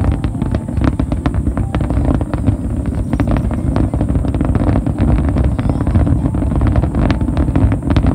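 A dense barrage of fireworks: a continuous low rumble of bursting shells with many rapid cracks and pops layered over it.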